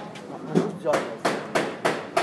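A run of sharp knocks, the last three coming quickly about a third of a second apart.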